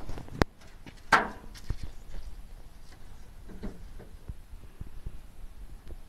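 A sharp click about half a second in, a louder clatter a little after one second, then scattered lighter knocks and taps.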